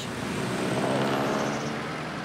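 A motor vehicle passing close in street traffic, its engine note swelling to a peak about a second in and then fading.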